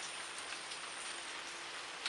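A steady, even hiss of background noise with no break or change.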